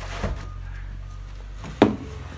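A single sharp knock near the end, over a low steady hum, typical of old boards being handled and pried loose.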